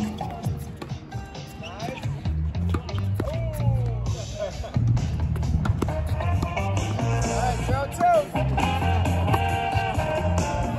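Background music: a song with a vocal melody over a bass line.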